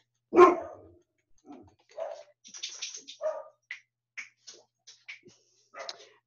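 A dog barks once, loud and sudden, about half a second in. Faint short clicks and small scattered noises follow.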